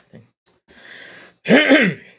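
A man clearing his throat once, near the end, after a quieter hiss of breath about a second in.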